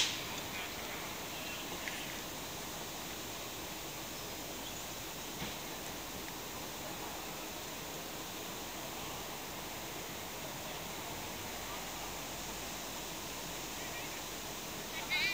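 Steady, even outdoor background hiss with no distinct event, after a short high squeal cuts off at the very start.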